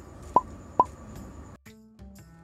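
Two quick rising 'bloop' pop sound effects, about half a second apart, over background music. The music drops out briefly near the end.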